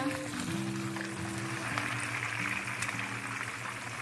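Whole fish shallow-frying in hot oil, a steady crackling sizzle that grows louder in the middle, under background music with long held notes.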